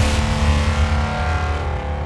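Logo intro sound effect: a low rumble with a layer of steady buzzing tones above it, slowly fading.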